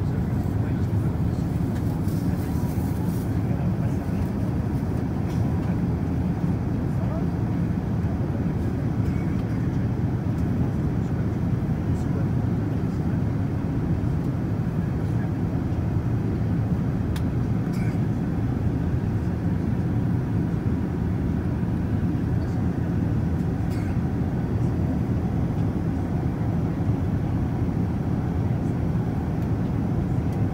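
Steady, even rumble of a jet airliner's cabin in flight, from the engines and the air rushing past the fuselage, heard from a window seat beside the engine.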